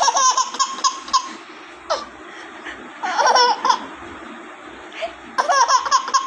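Baby laughing in bouts of quick, high-pitched laughs: a run of them at the start, a longer burst around the middle, and another run near the end.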